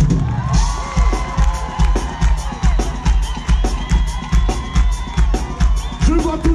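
Live séga band playing with a steady drum beat while a concert crowd cheers, shouts and whoops over the music.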